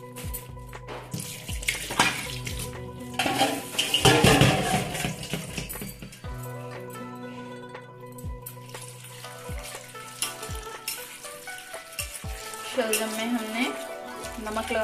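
Kitchen handling sounds at a stainless-steel sink: a polythene bag crinkling and rustling loudest between about two and five seconds in, and a steel bowl knocking and clinking several times, over steady background music.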